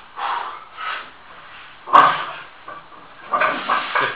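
A strongman's strained grunts and forceful breaths as he heaves a 110 kg log from the floor up to his chest, with the loudest, sudden grunt about halfway through.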